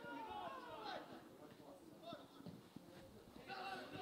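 Faint, distant shouts and calls of footballers on the pitch, heard mostly in the first second, over quiet open-air ambience.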